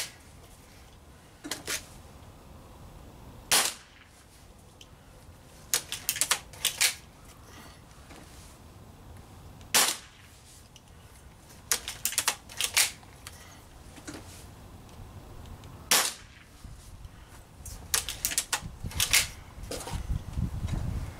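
Gamo Swarm Maxxim .177 break-barrel pellet rifle being fired repeatedly, a sharp shot roughly every six seconds. Between shots come groups of quicker metallic clicks and clunks as the barrel is broken open and cocked for the next pellet from the 10-shot magazine.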